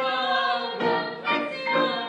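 Two young girls singing a song together to grand piano accompaniment. A long held note breaks off about a second in, and shorter sung phrases follow.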